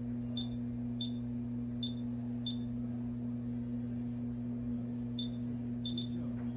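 Steady low electrical hum, with short high beeps: four in the first few seconds, under a second apart, then two more near the end.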